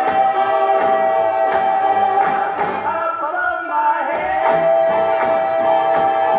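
78 rpm shellac record of a 1950s gospel-style duet playing on a turntable: male voices hold a long note, break off, and hold another from about two-thirds of the way in, over backing with a steady beat.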